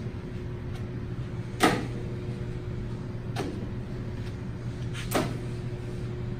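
A frisbee thrown and caught back and forth: a sharp slap of hand on the plastic disc about every one and three-quarter seconds, with fainter clicks between, over a steady room hum.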